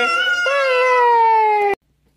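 A high voice holding one long note that slides slowly down in pitch, ending abruptly near the end.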